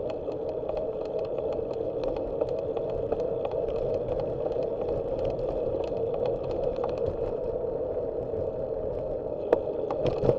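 Steady wind and road noise on a bike-mounted camera riding along an asphalt street, with small rattling ticks throughout and a sharper click near the end.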